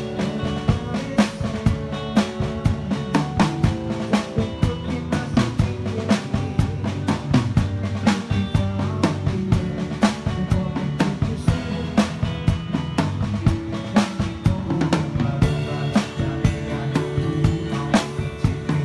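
Drum kit played live in a band: a steady beat of kick, snare and cymbal strokes over sustained bass and chordal instruments.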